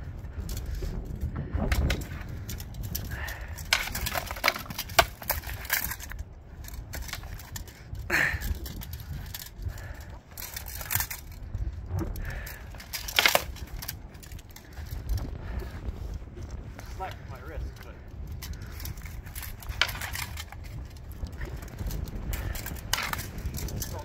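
Longswords clashing in sparring: a series of sharp blade-on-blade strikes and knocks at irregular intervals, over a steady low rumble of wind on the microphone.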